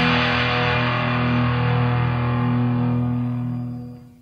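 Final chord of a rock song on distorted electric guitar, held and ringing without drums, then fading out near the end.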